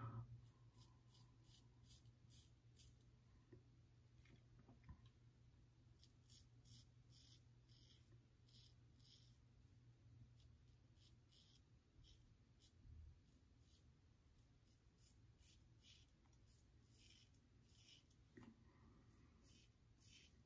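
Faint short scraping strokes of a Gillette Tech double-edge safety razor cutting lathered beard stubble, coming in runs of quick strokes throughout, over a steady low room hum.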